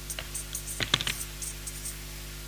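Marker pen squeaking and scratching on a whiteboard in a quick series of short strokes as a word is written out.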